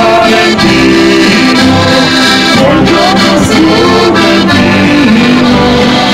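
Accordion playing a traditional-style tune: a moving melody over held chords, loud and without a break.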